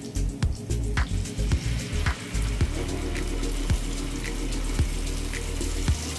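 Beans sizzling as they go into hot oil with onion in a frying pan, a steady hiss that starts about two and a half seconds in, over background music with a steady beat.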